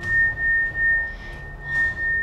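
A steady, high, pure tone, like a struck tuning fork's, holds unchanged at one pitch, with a few soft swells of noise beneath it.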